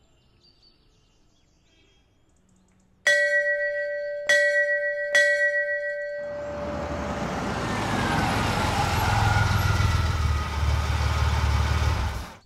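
After about three seconds of near silence, a hanging metal temple bell is struck three times, about a second apart, each strike ringing on. Then a steady wash of street traffic noise with a low engine rumble swells gradually.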